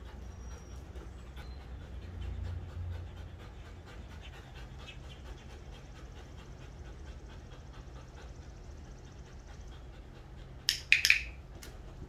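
A dog panting rapidly and steadily while it heels and sits. About a second before the end there are a few loud, sharp smacks.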